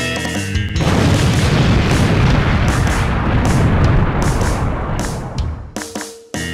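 A loud boom sound effect cuts in about a second in, dubbed over a balloon sculpture bursting. It rumbles on for several seconds and fades away near the end.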